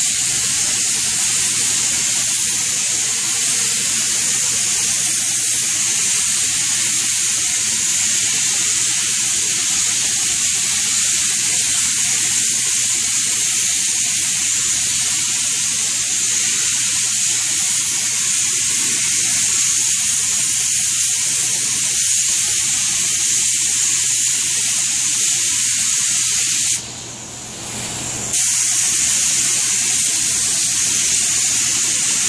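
Compressed-air spray gun hissing steadily as it sprays a walnut shader. The spray stops for about a second and a half near the end, then starts again.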